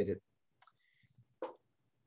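The tail of a man's spoken word, then two faint, short clicks about a second apart.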